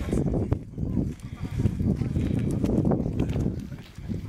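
Wind rumbling on the microphone, with footsteps and trekking-pole taps on a gravel track.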